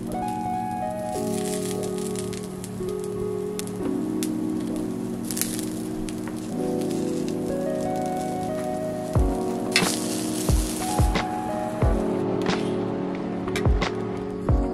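Background music of sustained chords, with a low drum beat coming in about nine seconds in, over a steady hiss of food sizzling on a hot cast-iron grill pan.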